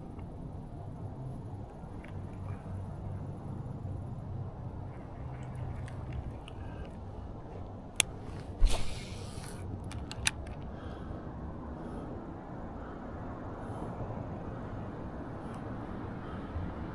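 Steady low outdoor background hum, with a sharp click about eight seconds in, a short rustle just after, and a smaller click about two seconds later.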